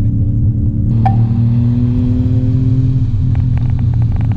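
Car engine idling, heard from inside the cabin, its pitch creeping up slightly and dropping back near the end. There is a single sharp click about a second in.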